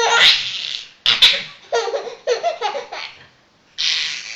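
A baby laughing in loud bursts: a long peal at the start, a shorter one about a second in, then a run of quick short laughs, a brief pause, and another peal beginning near the end.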